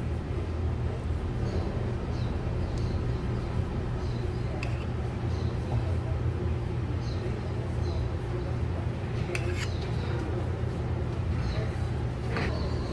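A steady low background hum, with a few faint clicks.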